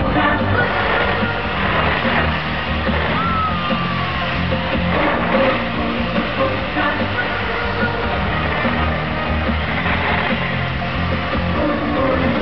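Live amplified children's pop music from a stage sound system, running continuously with a steady bass line and beat. A short falling tone sounds about three seconds in.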